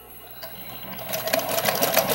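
Alphasew PW200-ZZ walking-foot zigzag lockstitch machine starting to sew about a second in, a quick run of needle strokes that grows louder as it gets going.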